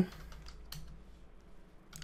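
Computer keyboard typing: a few separate keystrokes, mostly in the first second and one more near the end, as a short shell command is entered.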